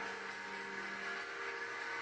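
A steady hum of several held tones, heard through a television's speaker.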